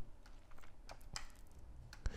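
A few faint clicks of computer keyboard keys being tapped, as the next image is brought up in the photo viewer.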